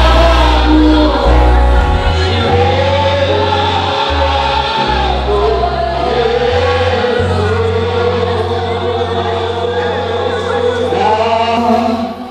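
Choir and congregation singing a slow gospel worship song together, with long held notes over amplified instruments and sustained bass notes.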